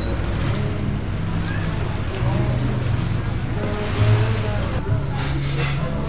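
People's voices over a low, steady hum, with a brief louder moment about four seconds in.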